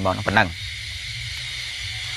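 A man's voice speaks for about half a second, then stops, leaving a steady hiss with a low hum underneath in the pause.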